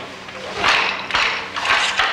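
Jute yarn swishing as it is pulled by hand through the warp threads of a carpet loom: three short strokes about half a second apart, over a low steady hum.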